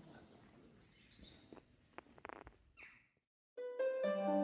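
Faint outdoor ambience with a few brief clicks and a short high call, then a cut to silence, and background music starts about three and a half seconds in.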